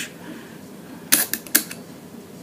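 Leaf shutter of a large-format camera lens worked by hand: a few short, sharp mechanical clicks a little past the middle, the two loudest about half a second apart.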